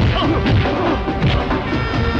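Film fight-scene punch and hit sound effects, several sharp whacks in quick succession over loud action background music.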